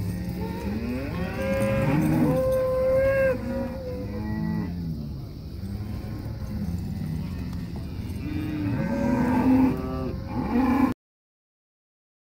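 Cattle mooing repeatedly: a long call about two seconds in, shorter calls after it, and a run of calls near the end before the sound cuts off suddenly.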